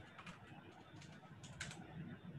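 A few faint, scattered computer keyboard key clicks, typing on a keyboard.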